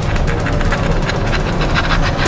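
Wood fire crackling in a brick pizza oven, irregular sharp clicks over a steady low rumble.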